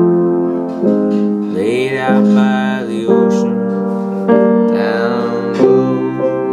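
Instrumental stretch of a song: a keyboard plays held chords, a new one struck about every second, with a sliding note rising twice over them.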